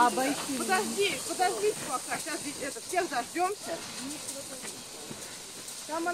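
Several people talking indistinctly at a distance, over a steady high hiss.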